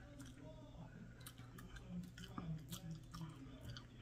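Close-up chewing of a chopped cheese slider on a soft Hawaiian roll bun: faint, irregular mouth clicks.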